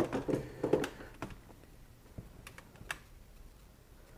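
A few light, irregular clicks and taps of handling, sparser and fainter toward the end.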